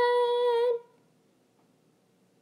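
A lone female voice, unaccompanied, holds one steady sung note that stops abruptly under a second in, leaving near silence.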